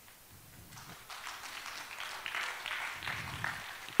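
Light, scattered applause from a seated congregation, building about a second in.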